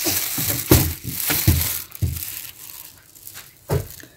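Broom bristles sweeping a wooden plank floor in several irregular scraping strokes, with a few sharp knocks.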